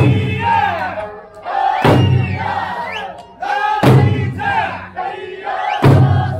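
Eisa drums, the large barrel drums and small hand drums, struck together three times, about every two seconds. Between the strikes, dancers shout calls, with music underneath.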